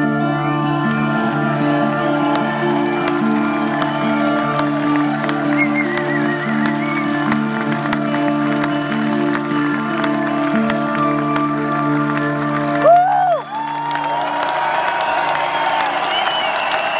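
A live band holds sustained keyboard chords over a slowly repeating figure as a song closes. The music stops about 13 seconds in, and the crowd cheers, whistles and applauds.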